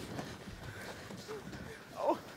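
A quiet lull: faint voices and the footsteps and shuffling of performers moving on a stone stage.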